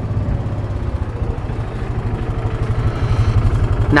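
Kawasaki Mule utility vehicle's engine running as it drives down a rough dirt trail, a fast low throb that grows a little louder near the end.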